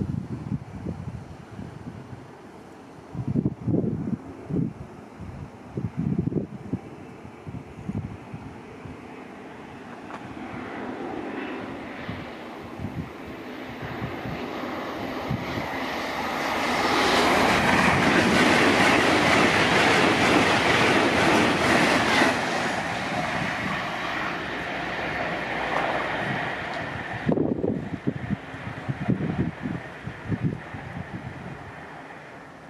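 A train passes through a closed level crossing: a rushing rail noise that builds for several seconds, is loudest in the middle, then fades away. Gusts of wind buffet the microphone in the first few seconds and again near the end.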